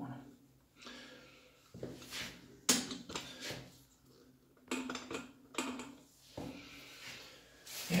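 About five separate light knocks and clatters, spaced a second or so apart, with faint handling noise between them.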